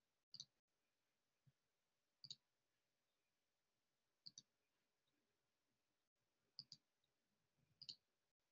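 Near silence broken by faint, sharp clicks, mostly in quick pairs, about every two seconds.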